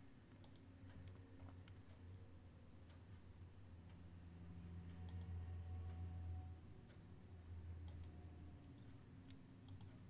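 Faint computer mouse clicks, coming in quick pairs about four times, over a low steady hum.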